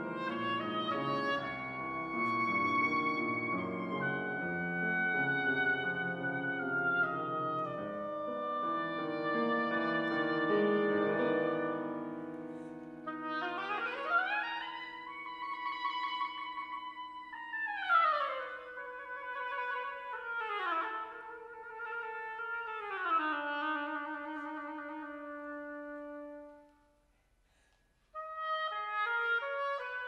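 Flute, oboe and piano playing together. About halfway through the others drop out and the oboe plays alone, sliding up in a long glide and then down again in several steps, before a brief pause and the ensemble coming back in near the end.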